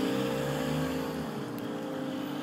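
Low rumble of a distant vehicle passing, swelling and then fading within the first second and a half, under the fading ring of a held piano chord. A faint high tick comes near the end.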